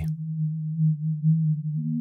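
A steady low electronic tone, like a single held synthesizer note, that steps up to a higher pitch near the end.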